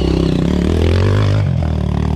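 Dirt bike engine running close by on a rocky trail, its revs rising and falling as it picks its way over the rocks.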